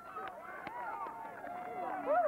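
Many young players' high voices overlapping, short calls and chatter from a group of kids.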